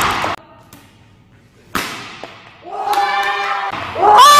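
A single sharp smack from badminton smash play a little under two seconds in, then a person's drawn-out vocal exclamation near the end.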